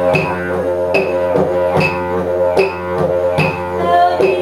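Didgeridoo playing a steady low drone in live music, with a regular beat of sharp accents about every 0.8 s and other notes changing above the drone.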